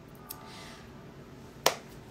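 A single sharp snap about one and a half seconds in, a light clap of the hands, over faint room tone.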